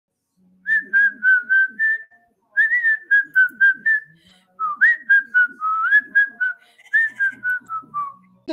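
A whistled melody of short, clear notes in three phrases, with soft low notes underneath as accompaniment, played as an intro tune.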